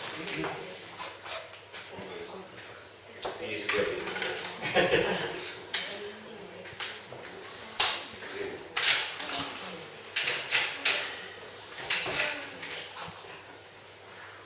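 Indistinct murmured voices in a hall, with scattered sharp knocks and shuffling as the pianist settles at the grand piano; no piano is played yet.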